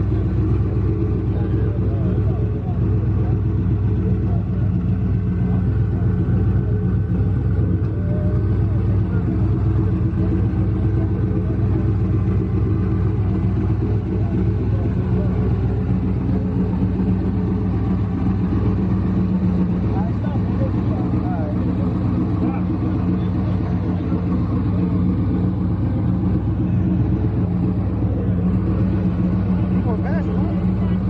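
Chevrolet Chevelle's engine idling steadily at a low, even pitch, close by, with voices in the background.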